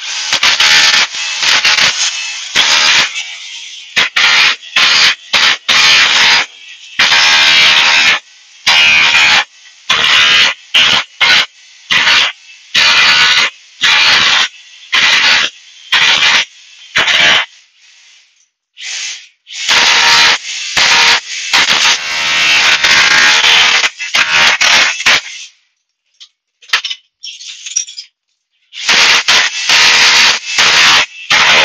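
Ryobi RSDS18X cordless SDS hammer drill in chisel-only mode, hammering a chisel into ceramic floor tiles to break them up. It runs in repeated loud bursts, from under a second to several seconds long, with short pauses and a longer pause near the end.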